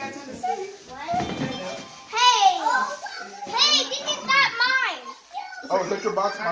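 A young child's high-pitched voice exclaiming and babbling, not in clear words, through the second half. About a second in there is a brief rustle of cardboard packaging being handled.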